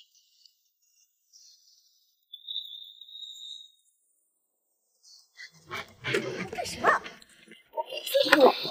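Near silence with a short, high, steady tone a little after two seconds in. From about five and a half seconds a loud raised voice shouts, the line 放开我 ('let go of me').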